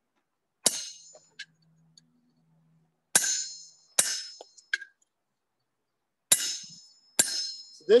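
Blacksmith's hand hammer striking a chisel on an anvil to cut hot metal (a chisel cut): five loud ringing metallic blows at uneven intervals, with a couple of lighter taps between them.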